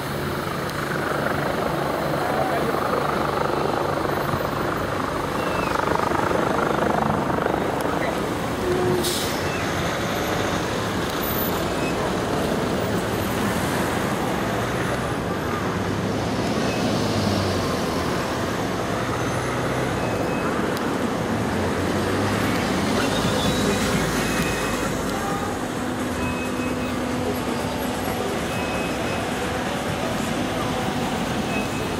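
Road traffic noise from cars and trucks stopped in a highway jam, engines running steadily.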